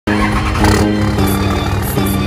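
Background music with held notes, over the rumble of a diesel pickup's engine running at the exhaust.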